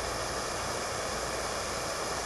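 Handheld gas torch burning with a steady hiss.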